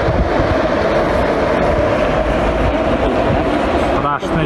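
Forest fire burning through conifer trees: a loud, steady rushing noise with a low rumble underneath.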